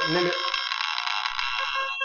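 Electronic soundtrack of a generative video-art piece: a dense cluster of many steady, high held tones, fading near the end.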